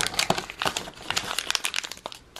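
Crinkling and rustling of paper and thin cardboard as a small paper-wrapped soap bar is pulled out of an advent calendar compartment: a dense run of small crackles.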